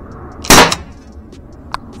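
A CO2-powered .50-calibre less-lethal air pistol fires one loud shot about half a second in, with a brief tail after the report. The CO2 pressure is starting to drop off after the first shots. A short sharp click follows a little over a second later.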